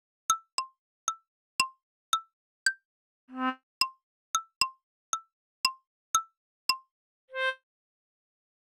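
Edited-in cartoon pop sound effects: short, sharp pitched pops alternating between two notes, roughly two a second. Two longer, lower tones come in, about three and a half and seven and a half seconds in, with dead silence between the sounds.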